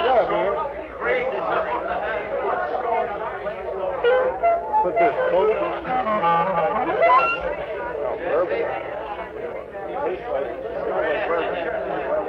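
Party guests talking over one another, several voices at once, on an old home tape recording, with a few held instrument notes here and there.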